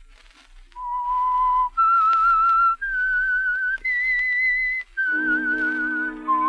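Signature whistled theme of a 1950s radio mystery drama. A person whistles a slow melody of long held notes with vibrato, each lasting about a second, climbing step by step and then stepping back down. An orchestra comes in underneath near the end.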